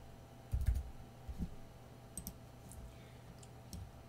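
Computer keyboard keys and mouse buttons clicking a few separate times, faintly, with a couple of soft low knocks about half a second and a second and a half in.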